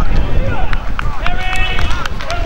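Wind buffeting the microphone in a loud low rumble, with players and spectators shouting across a football pitch and a few sharp knocks about a second in.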